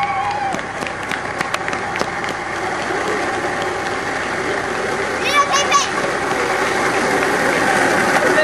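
A wheelchair rolling along, making an even noise that grows steadily louder, with scattered clicks in the first couple of seconds. Voices sound over it, with a short high-pitched shout a little past five seconds in.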